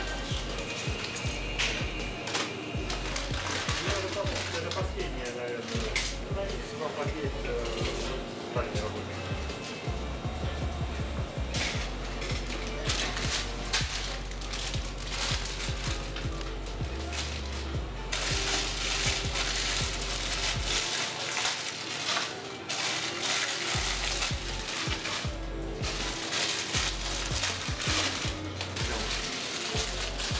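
Plastic snack wrappers and a black plastic bag rustling and crinkling in stretches as packs are handled out of a shopping trolley, with short clicks and knocks, densest in the second half. Background music and faint voices run underneath.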